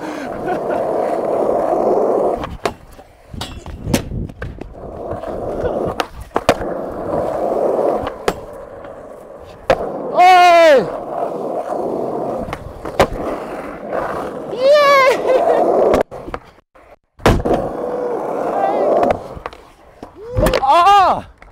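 Skateboard wheels rolling on smooth asphalt, broken by sharp pops and clacks of the board on ollies and landings. Two short falling-pitched shouts of a voice, about halfway through and a few seconds later.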